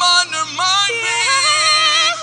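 Live worship music: a singing voice with sliding, ornamented runs over sustained keyboard chords and a held bass note.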